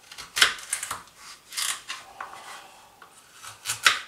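Kitchen knife cutting through raw carrots on a cutting board: several separate crunching cuts, the loudest about half a second in and just before the end.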